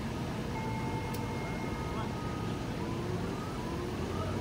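Steady fairground background noise: a low rumble with faint, distant voices, and no single loud event.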